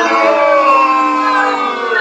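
A group of voices holding long notes together, their pitches sliding slowly downward.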